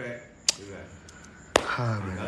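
Two sharp taps about a second apart, with a low voice talking quietly in between.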